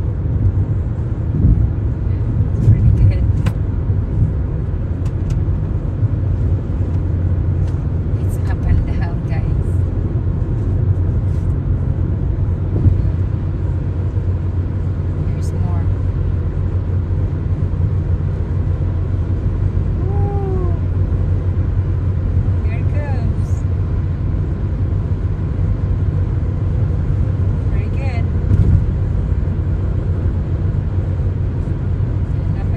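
Steady low rumble of road and engine noise inside a car cruising at highway speed.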